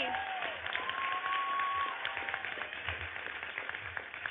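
Applause: many people clapping together in a steady, dense patter, with a single held high note sounding over it for about a second, starting about a second in.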